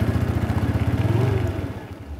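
Motorcycle engine running with a rapid, even beat as the bike rolls up. Its pitch rises slightly a little past a second in, and the sound fades near the end.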